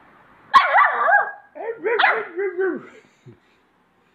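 American Staffordshire terrier puppy barking in two short runs of high, wavering barks. The first run starts about half a second in and the second about a second and a half in.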